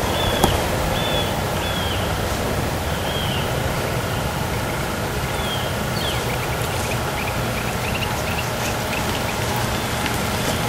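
Steady rushing outdoor noise with small birds calling over it: short chirps about once a second at first, then a quick run of rapid chirps in the second half.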